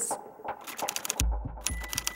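Typewriter key strikes clacking in a quick run as text types out letter by letter, the strikes getting heavier past the middle.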